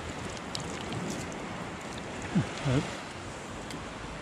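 Calm shallow seawater washing steadily, with a few faint clicks.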